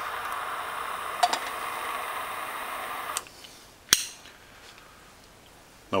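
Hand-held lighter flame hissing steadily for about three seconds as it is held to a methanol alcohol stove, then stopping suddenly. A single sharp click follows about a second later.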